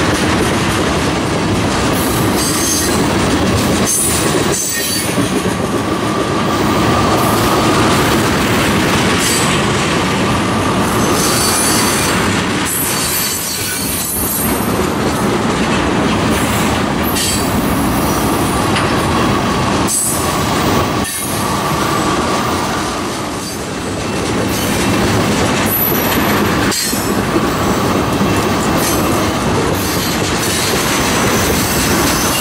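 Freight train of tank cars rolling past close by: steady wheel-on-rail noise, with a thin wheel squeal that fades in and out several times.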